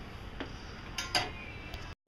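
A few light clicks over a low background hiss: one about half a second in and two close together about a second in.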